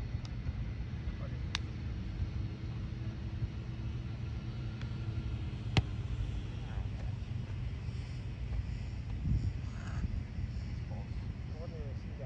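Steady low outdoor rumble with two sharp smacks of a Spikeball roundnet ball in play, the first about a second and a half in and a louder one near the middle. Faint voices are heard in the second half.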